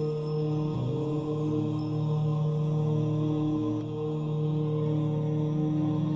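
Devotional outro music: a chanted mantra held on long, steady drone-like notes.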